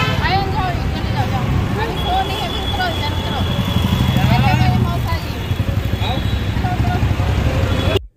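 Voices talking over a loud, steady low rumble of a vehicle engine running nearby and street traffic. A thin high steady tone sounds from about two seconds in.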